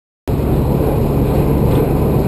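A river ferry's engine running at the pier with a steady low rumble, cutting in abruptly a quarter of a second in.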